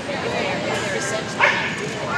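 A dog barks once, short and loud, about a second and a half in, over people talking in the background.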